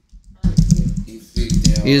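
Typing on a computer keyboard, a run of key clicks starting about half a second in. A voice says "Is" near the end.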